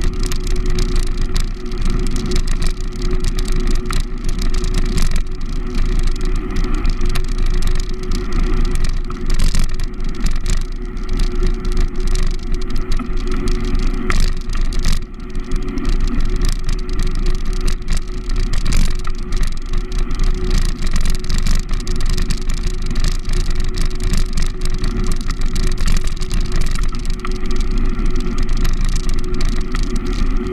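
Wind and road rumble on the microphone of a camera mounted on a moving bicycle, with frequent small knocks and rattles and a steady low hum underneath.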